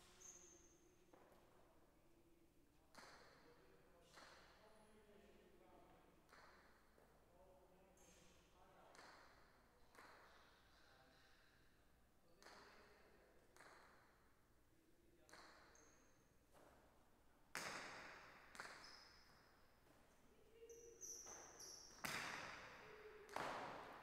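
A jai alai pelota cracking against the frontón's walls and floor in a large, echoing hall, a sharp hit every second or so. The hits grow much louder in the last several seconds of play. Brief high squeaks run between them.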